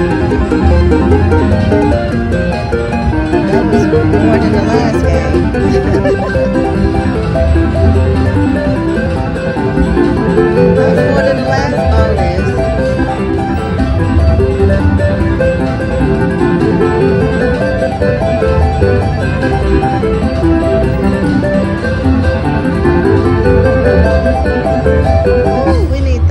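Fu Dai Lian Lian Panda slot machine playing its free-games bonus music: a plucked-string tune over a steady low beat, with rising runs of notes every several seconds as the bonus wins add up.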